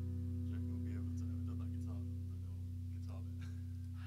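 Electric guitar's last chord ringing on through the amplifier as a steady low drone, fading slightly, with faint talk over it.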